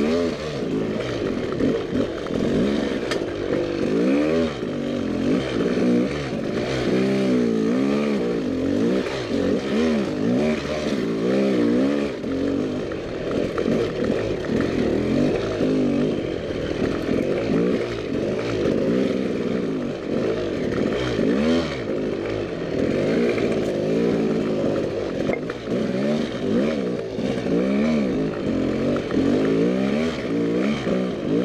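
Dirt bike engine revving up and down over and over, the pitch rising and falling every second or so as the bike is picked slowly over rocks on a technical trail.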